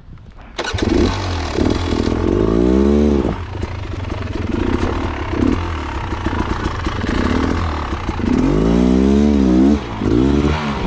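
Trail motorcycle engine, restarted after stalling, catches suddenly about half a second in and then runs, revving up and back down twice as the bike moves off.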